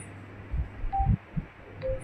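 A steady low electrical hum, with a few dull low thumps about half a second and a second in, and two brief faint tones.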